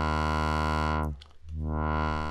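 Low, harmonic-rich synthesizer drone with its filter cutoff swept by the ROTLFO's tilted round (sine-like) LFO wave. The tone darkens and almost drops out a little over a second in, then brightens again, in a slow cycle of roughly two and a half seconds.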